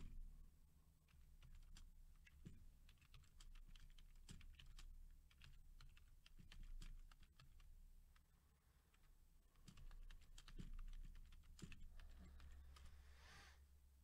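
Faint typing on a computer keyboard: irregular runs of key clicks with short pauses between them.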